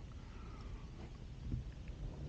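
A quiet pause: faint low background noise with a soft tap about one and a half seconds in.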